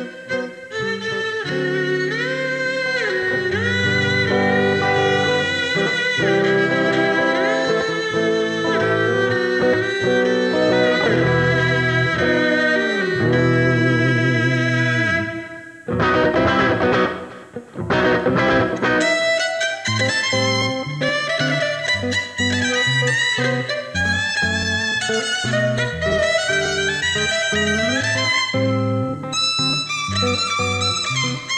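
Violin and electric guitar playing together: the violin carries a sliding melody over the guitar and a low accompaniment. About halfway the music breaks briefly into a few sharp struck chords, then resumes with a steadier rhythm.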